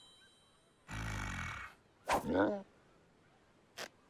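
Cartoon sound effects between music cues: a short low rumbling noise about a second in, then a brief pitched vocal-like sound that wavers up and down, and a sharp click near the end.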